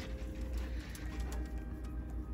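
Soft background music with a few held notes over a low hum.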